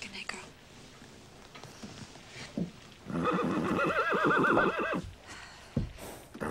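A mare whinnying: one call of about two seconds starting about three seconds in, its pitch quavering rapidly.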